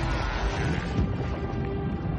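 Orchestral film score with sustained chords, over a dense, low rumbling bed of action sound effects.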